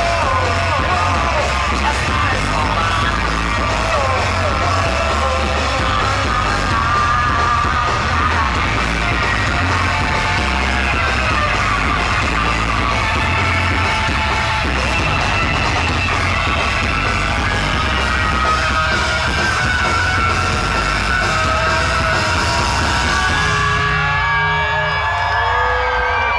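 Live rock music played loud in a club hall, with a voice singing and yelling over a steady bass beat, recorded from among the audience. The sound turns duller near the end.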